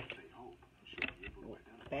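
Paper cards being handled as one is drawn from the deck: soft paper rustling with a short click about a second in.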